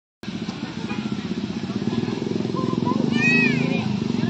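Motorcycle engine running, a steady rapid throb that slowly grows louder, with a brief high-pitched call about three seconds in.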